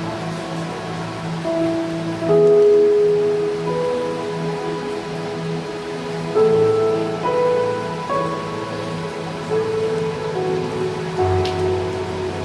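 A worship band playing slow instrumental music: long held notes stepping gently from one pitch to the next over a steady soft low pulse, with a deeper bass note coming in near the end.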